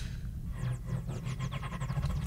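Sound effects from a television episode's soundtrack: a steady low rumble under a quick run of falling, whistle-like sweeps that begins about half a second in and lasts about a second.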